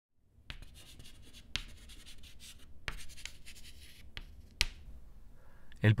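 White chalk scratching on a blackboard in a run of drawing strokes, with four sharp taps of the chalk on the board along the way.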